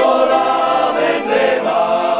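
A small men's choir singing together, voices holding long notes.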